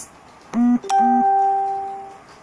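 Electronic chime: two short low beeps, then a higher steady two-note ringing tone that fades away over about a second.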